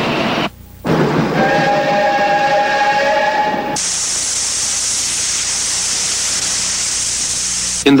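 Cartoon steam-locomotive sound effects: a rushing noise broken by a short gap about half a second in, then a steam whistle with several steady tones sounding over it for about three seconds, then a steady high hiss of steam for about four seconds.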